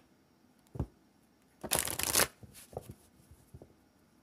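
A deck of cards being shuffled: one brief burst of about half a second near the middle, with a soft thump before it and a few light clicks after.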